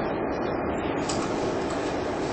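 Steady background hiss of room noise with no clear event in it; a brighter, higher hiss joins about a second in.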